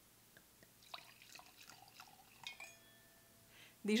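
Slightly fizzy white wine poured from the bottle into a wine glass: faint, irregular splashing for a couple of seconds, then a short ringing tone from the glass.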